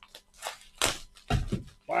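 A white padded plastic mailer and a paper envelope crinkling and rustling in a series of short bursts as gloved hands handle them, with a heavier bump of handling about a second and a half in.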